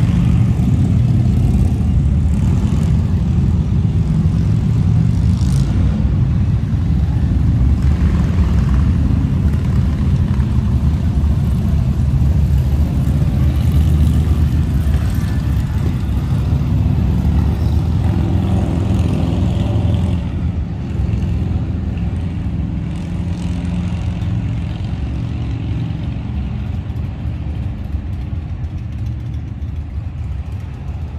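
Motorcycle traffic rumbling past on the street: a steady, loud, low engine rumble from passing cruiser motorcycles, easing a little about two-thirds of the way through.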